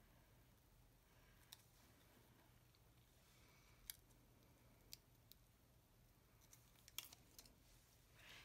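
Near silence: faint room hum with about half a dozen faint, sharp clicks of fingers picking washi flower stickers off their backing paper.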